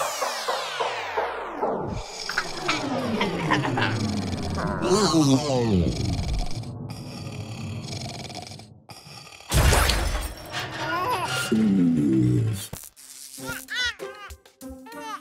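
Animated cartoon soundtrack: music with sweeping falling and rising tones, then a loud crash about nine and a half seconds in.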